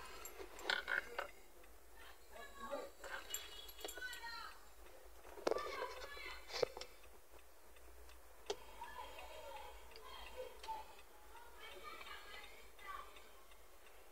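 Faint voices in the background, speaking in short broken stretches, with a couple of sharp light clicks about six and a half and eight and a half seconds in.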